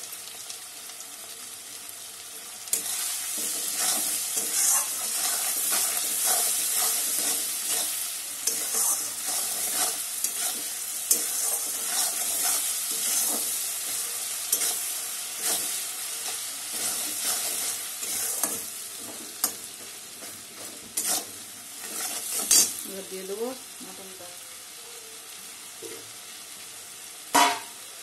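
Onions and ground spices frying in hot oil in an aluminium kadai, stirred with a spatula. The sizzling and stirring turn loud about three seconds in and fade after the middle, leaving a gentler sizzle with a few sharp clicks near the end.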